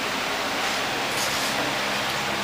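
Steady, even hiss of workshop room noise with a faint low hum underneath.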